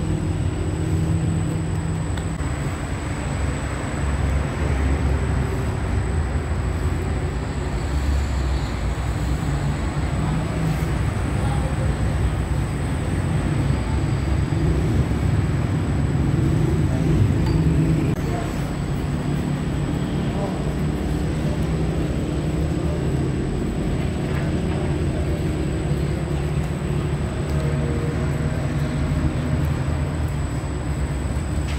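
Steady low machine rumble, with indistinct voices mixed in and a faint high whine throughout.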